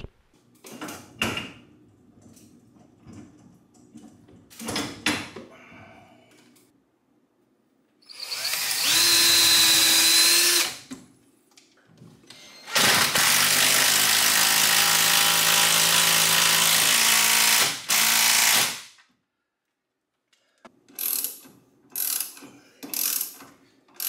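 Cordless drill running in two long bursts, about three seconds and then about five seconds, with a steady motor whine. A short burst follows, with scattered knocks and clicks from handling hardware before and after.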